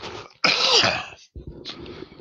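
A man coughing and clearing his throat in three short bursts, the loudest about half a second in.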